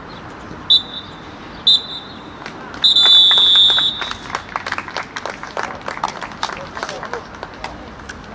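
Referee's whistle blown in two short blasts and then one long, loud blast, the usual signal for full time. Scattered clapping follows.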